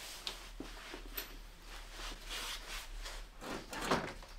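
Faint, scattered clicks and rubbing: small handling noises from gloved hands and a screwdriver working on a car's radiator and front-end mountings.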